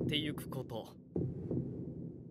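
Anime soundtrack: a narrator speaking Japanese for about the first second over a low throbbing sound effect. The throbbing breaks off briefly, then returns under quiet.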